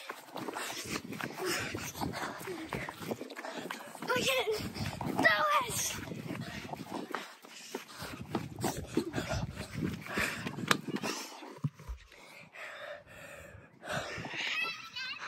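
Rustling and handling noise from a phone camera carried on the move, with wind on the microphone. A couple of short pitched cries break in about four to six seconds in.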